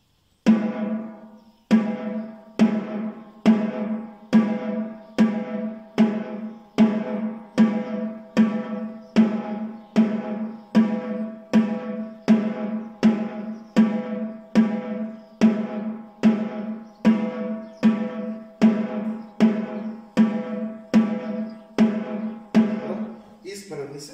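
Snare drum struck with wooden drumsticks in slow, evenly spaced strokes, a little more than one a second, each ringing on until the next. The strokes make up a beginner's right-right-left-left sticking exercise.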